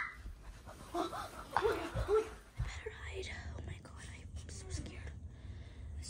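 Quiet whispered voices, a few short faint phrases too soft to make out, with small handling clicks.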